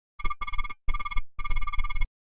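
Electronic ringing tone like a telephone ringtone, a fast-pulsing high warble in four short bursts that cuts off suddenly at the end.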